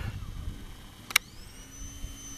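A single sharp click about a second in, followed by the faint whine of a Sony camera's zoom lens motor. The whine rises in pitch and then holds steady as the lens zooms in, over a low rumble of handling noise.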